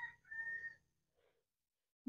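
A faint, short whistle-like tone lasting under a second, then silence.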